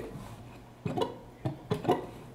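A few short plucked notes on an archtop guitar: three brief sounds, a little under a second in, at about a second and a half, and just before the end, with quiet between them.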